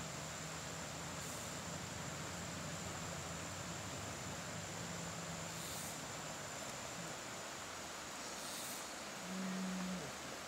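Faint, steady outdoor background hiss beside a creek, with a thin, continuous high-pitched whine throughout and a faint low hum during the first half.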